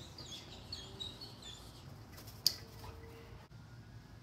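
Small birds chirping for the first second or so, with a single sharp click about two and a half seconds in as the loudest sound.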